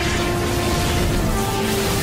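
Dramatic soundtrack music with long held notes over a steady rushing noise: the super-speed sound effect of a speedster running in a burst of lightning.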